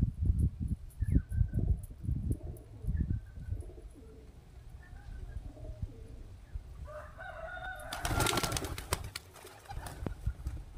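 Pigeons taking off together about eight seconds in: a loud, rapid clatter of wingbeats lasting about a second and a half, just after a short bird call. Before that there is a run of soft low thumps and faint chirps.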